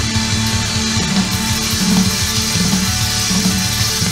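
A live band playing an instrumental passage without singing: electric guitar over a moving bass line and drums, at steady full volume.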